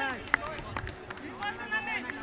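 Men's voices calling out from the players on a cricket field, with short rising-and-falling calls throughout and one sharp click about a third of a second in.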